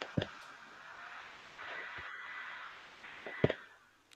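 Faint background hiss of a video-call audio line, with two short clicks about a quarter second in and near the end.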